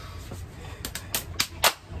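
Hands slapping: four quick, sharp claps of fist or hand on palm, nearly four a second, the last the loudest, counting out a round of rock, paper, scissors.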